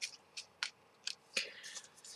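Tarot cards being handled and laid down on a cloth: several short, light card clicks and flicks, with a soft slide near the end.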